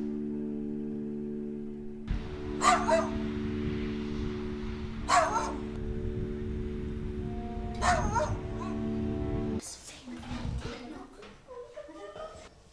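Background music holding a sustained chord, with a dog barking three times at even intervals over it. The music stops near the end, leaving soft room sounds.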